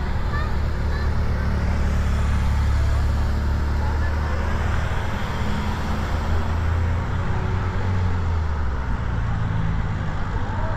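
Race convoy cars driving past one after another, a steady rumble of engines and tyres on the road that is loudest in the middle.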